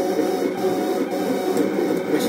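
Vinyl cutting plotter running a cut command: its stepper motors whine in quick, changing tones as the cutting head shuttles and the roller feeds the vinyl back and forth, without a pause.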